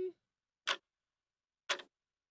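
Clock-ticking sound effect: two sharp ticks about a second apart, cued as the show's "putting the clock on" signal.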